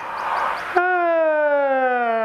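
A man's long, vocalised yawn: a breathy intake of air, then, under a second in, a drawn-out 'aah' that slides steadily down in pitch.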